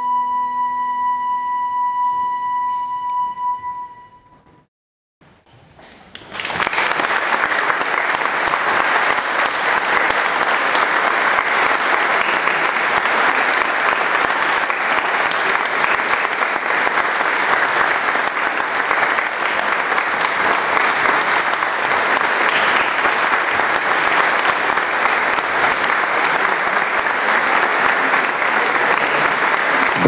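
Flute, viola and guitar trio ending on a long held high flute note over a lower sustained tone, which fades out about four seconds in. After a second of silence, audience applause breaks out and carries on steadily.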